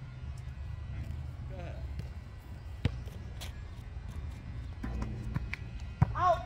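A basketball bouncing on an asphalt court: one sharp bounce about three seconds in, then a few fainter bounces and footfalls near the end, over a steady low rumble.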